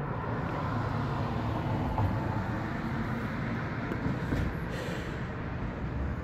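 Road traffic: the rumble and hiss of a vehicle going by, swelling over the first couple of seconds and slowly fading.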